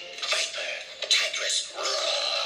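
Cartoon fight sound effects and score from an animated film played through a small phone speaker: a fast run of whooshes and metallic clatter.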